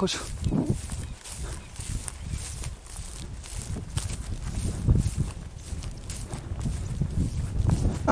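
Uneven low rumble of wind on the microphone, with scattered rustles and knocks from a handheld camera.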